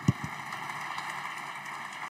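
Applause from deputies in a parliamentary chamber: a steady patter of many hands clapping, with a couple of short low thumps just after it begins.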